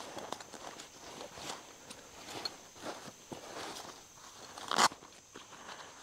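Rustling and small clicks of hands handling a fabric tool roll and the cordage in its pockets, with one louder rustle just before the end.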